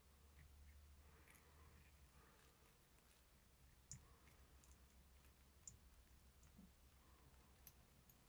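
Near silence: faint room hum with a few soft, sparse clicks as a whip finish tool and thread are worked at the eye of a fly hook.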